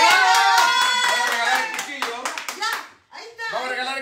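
A few people clapping and shouting excitedly, dying away about three seconds in.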